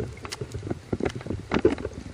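Underwater handling noise picked up by a camera mounted on a speargun: irregular clicks and knocks over a low, uneven rumble of water moving past the housing as the gun is handled just below the surface.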